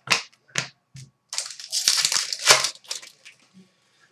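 Hockey trading cards being handled and shuffled on a glass counter: three sharp clicks in the first second, then about a second and a half of rustling and scraping, and a few light ticks near the end.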